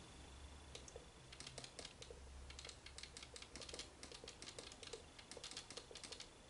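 Marker pen writing on a whiteboard: faint, irregular taps and short scratches as each capital letter is stroked, starting about a second in.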